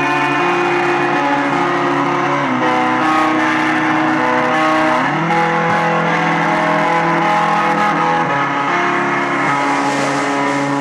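Live rock band playing: electric guitar chords are held and ring on, moving to a new chord about every two to three seconds.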